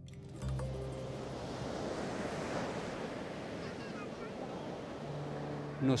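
A steady rushing noise, like surf or wind, under soft background music with sustained low notes; both come in about half a second in.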